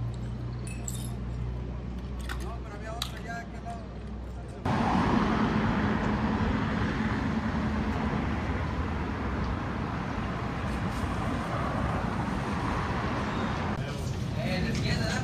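A low steady hum with a few faint clinks, then, about five seconds in, a sudden cut to louder outdoor street noise with traffic going by.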